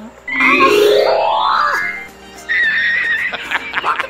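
A person shrieking in excitement: one long shriek that rises steeply in pitch, then a short high, wavering squeal, over quiet background music.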